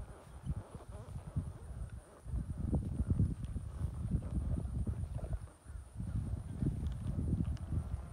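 Hoofbeats of a horse being ridden: a run of dull low thuds, with a brief lull about five and a half seconds in.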